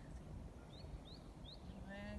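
Three short, high, rising bird chirps about half a second apart over quiet outdoor background, then a drawn-out pitched call begins near the end.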